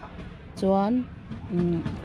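A voice speaking in short phrases, about half a second in and again near the end.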